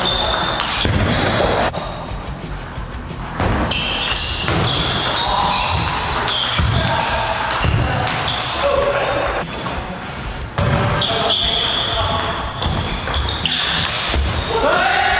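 Table tennis rally: a celluloid-type ball clicks off the rackets and the table in quick alternation, heard over background music.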